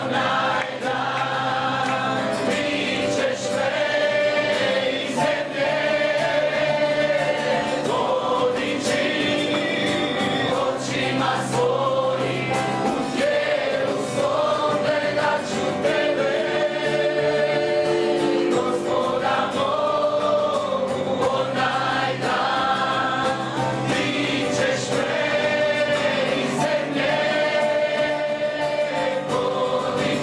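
Several voices, men and women, singing a gospel-style worship song together into microphones, accompanied by strummed acoustic guitars and a keyboard.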